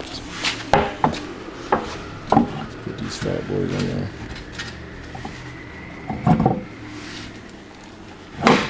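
A handful of sharp knocks and clatters, as of wheels and tires being handled and set down on a concrete shop floor. The loudest knocks come near the end. A faint steady high tone sounds for a couple of seconds in the second half.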